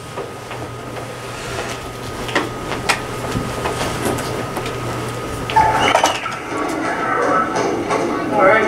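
A steady low hum with a few sharp clicks. About five and a half seconds in, the sound track of a recorded school assembly video starts playing through the room's speakers.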